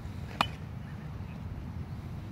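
A single sharp crack of a bat hitting a ground ball, about half a second in, with a short ring after it, over a steady low background rumble.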